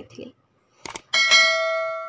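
A single bell chime struck about a second in, its several clear tones ringing on and slowly fading, with a short click just before it.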